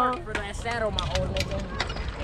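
Bicycle riding noise on a concrete path: a steady low rumble with several sharp clicks in the second half, and faint voices in the middle.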